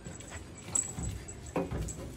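Basset hound puppy's claws tapping on a glass tabletop as she moves about, with a short whimper about one and a half seconds in.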